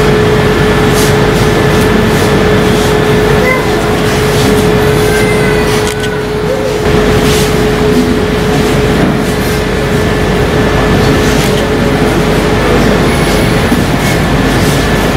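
Loud, noisy room sound with indistinct background voices, and a steady high hum running through it.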